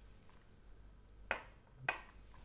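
A glass whisky tasting glass set down on a hard tabletop: two short, sharp clinks about half a second apart.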